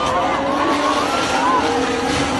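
Formula 1 cars' turbocharged V6 engines running and changing pitch as the cars go by, with spectators shouting over them.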